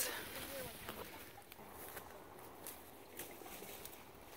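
Faint rustling and scattered light clicks of people walking through tall fireweed and brush, with a brief soft voice right at the start.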